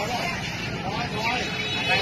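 Street traffic noise with people's voices talking over it.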